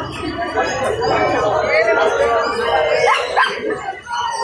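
A dog barks twice, quickly, near the end, over people talking.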